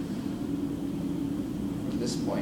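Steady low hum of a fan-cooled machine such as room ventilation or the projector, unchanging throughout, with a brief faint rustle right at the end.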